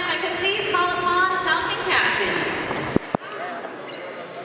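A woman's voice announcing over a microphone, with a sharp click about three seconds in, after which the sound is quieter.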